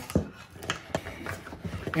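Metal spoon stirring brownie batter in a glass mixing bowl: soft squelching scrapes with a few light, irregular clicks as the spoon knocks against the glass.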